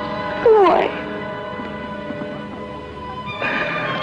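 Orchestral film score holding sustained chords. About half a second in, a short wailing cry falls steeply in pitch over the music.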